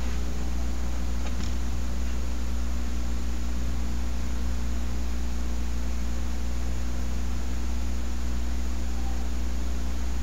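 Steady low electrical hum with an even hiss underneath, unchanging throughout: the background noise of the recording setup with no other sound in it.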